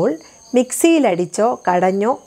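A woman talking in Malayalam, starting about half a second in after a short pause, over a steady high-pitched chirping of crickets.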